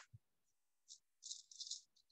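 Near silence in a pause of speech, with a few faint, short high hisses about a second in.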